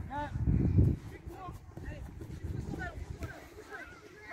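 Faint, high-pitched voices of children calling across an outdoor football pitch, with a loud low rumble in the first second.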